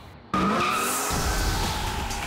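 Tire-squeal sound effect with a car rushing past, starting suddenly about a third of a second in as a high, slightly falling screech over noise. A low engine-like rumble joins about a second in, opening a title sting.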